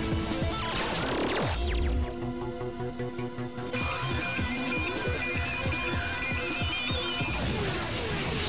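Electronic cartoon soundtrack music under race sound effects. About a second in, a futuristic racing machine sweeps past with a falling pitch, followed by a low thud. More falling swooshes come near the end.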